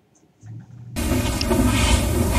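Near silence, then about a second in the soundtrack of an old black-and-white television recording of a jazz performance starts with a loud, even, hiss-like rush over a low rumble.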